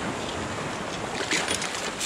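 Shallow sea water swirling and washing around the legs of someone wading in the surf. About one and a half seconds in there is a splash and water pouring as a long-handled stainless steel sand scoop is lifted out of the sea.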